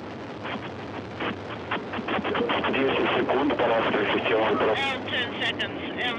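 Soyuz rocket engines just after liftoff, a dense crackling roar heard through a radio-bandwidth broadcast feed. Radio voice calls are mixed in, and a voice comes through clearly near the end.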